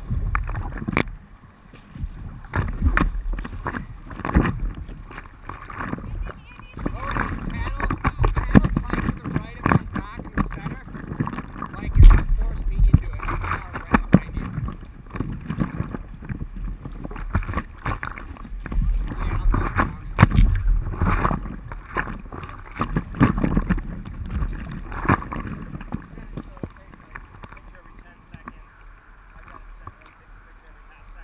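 Paddle strokes and river water splashing and knocking against a stand-up paddleboard, heard close on a camera mounted on the board, with irregular thumps and wind buffeting the microphone. The loudest thump comes about twelve seconds in.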